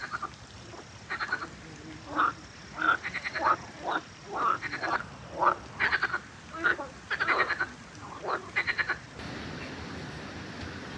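Frogs croaking in a chorus: a series of short calls, some single croaks and some quick rattling trills, repeated over about eight seconds before stopping near the end.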